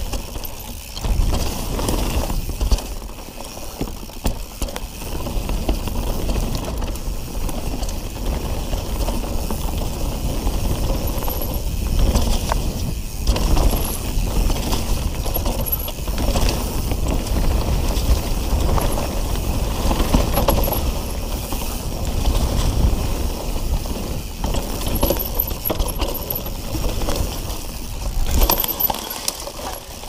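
YT mountain bike riding down a leaf-covered dirt singletrack: knobbly tyres rolling and crunching over dry leaves and bumps, with the chain and frame rattling and clicking all the way, over a constant low rumble.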